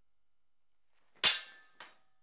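Two longsword blades clashing a little over a second in: one sharp clang with a brief metallic ring, followed about half a second later by a lighter second knock of blade on blade.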